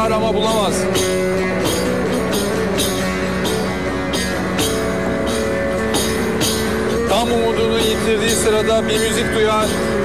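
Turkish folk music: a long-necked lute plucked over a steady jingling beat, with a man's voice singing a wavering line at the start and again about seven seconds in.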